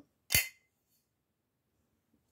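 A single short, sharp click or clack of something hard, about a third of a second in.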